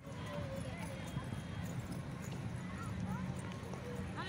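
Outdoor park ambience: a steady low rumble with faint voices and small children's footsteps on a paved path.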